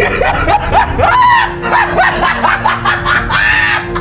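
High-pitched, squealing laughter in short rising-and-falling yelps, about four a second, with longer drawn-out squeals around a second in and near the end, over background music.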